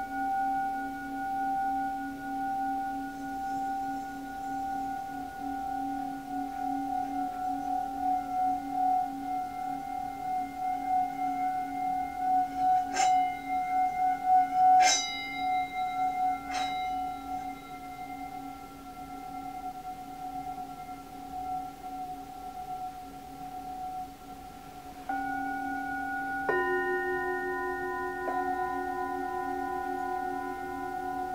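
Tibetan singing bowls ringing in long sustained tones whose loudness wavers and pulses. Around the middle a small hand-held bowl is struck three times, giving bright, quickly fading rings over the drone, and near the end two more bowls are struck, adding new lower and higher tones.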